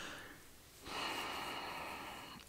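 A faint breath drawn in through the nose, starting about a second in and lasting about a second.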